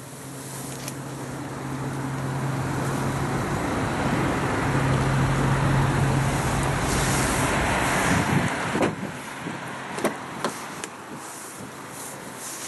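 A motor vehicle going past: a steady low engine hum with road noise that swells over several seconds and then falls away quickly. A few light clicks follow near the end.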